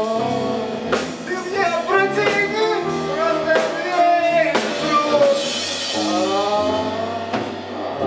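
Live rock band playing: bass guitar, keyboard and drum kit, with a voice singing into a microphone over it. A cymbal wash rings out about halfway through.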